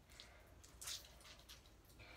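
Faint squishing and dripping as wet hair is wrung out by hand over a bathtub, a few soft wet sounds, the clearest a little under a second in.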